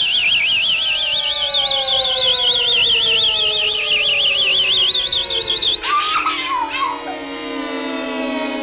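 Cartoon sound effect for a crossbow bolt in flight: a high warbling whistle, wobbling about five times a second, over a slowly falling tone. The whistle stops about six seconds in, a short wavering tone follows, and the falling tone carries on.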